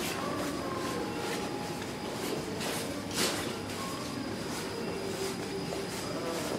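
Shopping trolley rolling over a hard tiled floor, its wheels and wire basket giving a steady rattling rumble, with a brief louder clatter about three seconds in.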